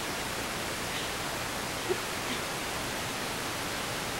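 Steady hiss of the recording's background noise, with a faint small click about two seconds in.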